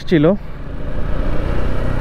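Suzuki Gixxer FI motorcycle's single-cylinder engine running at a steady cruise, mixed with wind and road noise on the rider's camera microphone.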